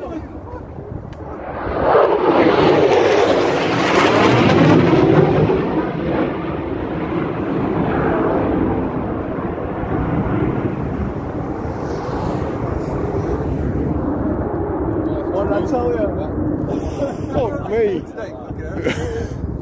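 Low-flying military jet passing through the valley: its roar swells about two seconds in and is loudest with a sweeping, phasing sound for a few seconds, then settles into a long steady rumble.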